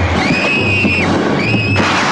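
Two high-pitched shrieks, the first about a second long and the second shorter, over a loud, dense horror-film soundtrack with a low drone.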